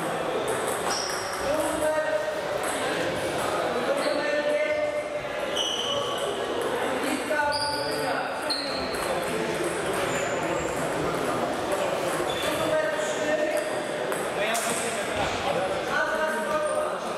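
Table tennis ball repeatedly clicking off bats and table during rallies, echoing in a large hall, over background voices.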